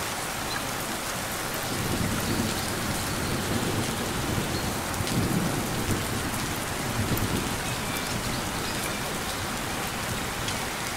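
Steady rain falling, with a low rumble swelling underneath from about two seconds in until about seven and a half seconds.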